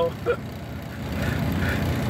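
Diesel truck engine running with a low, steady rumble, heard inside the cab. It is running again after its gelled fuel lines were thawed. A short laugh right at the start.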